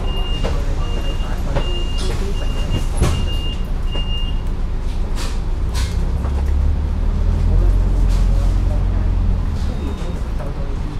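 Diesel engine of a KMB double-decker bus heard from the upper deck, crawling in traffic and then pulling away with a deep rumble that builds from about six and a half seconds to near the end. In the first four and a half seconds a series of about seven short, high beeps sounds over the engine.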